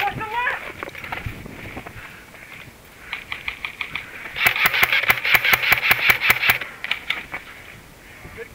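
Airsoft gun firing a rapid string of sharp shots, about seven a second, for roughly two seconds past the middle, over a background of distant shouting. A shouted voice is heard at the very start.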